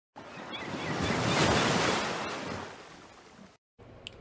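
Ocean wave surging and breaking: a rush of water noise that swells to a peak about a second and a half in, then fades away and stops just before the end.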